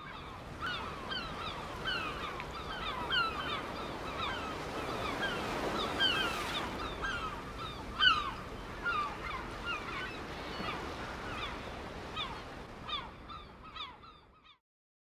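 A flock of birds calling over a steady background hiss: many short, downward-sliding calls overlap, several a second, and fade out at the end.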